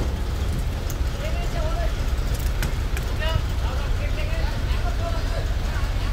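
Truck engine running with a steady low rumble, with faint voices in the background and a few light clicks.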